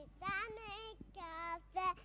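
A young girl singing a children's song into a handheld microphone, in short phrases of held notes.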